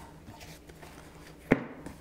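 Quiet handling of an album presentation box, with one sharp knock about one and a half seconds in as the lid is closed down onto it.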